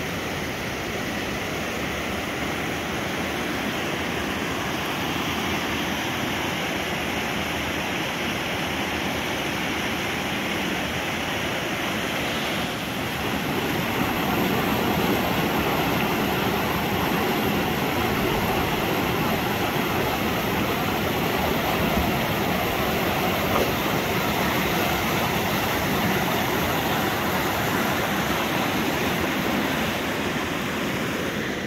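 River water rushing over rocks in rapids: a steady, even rush that gets louder about thirteen seconds in.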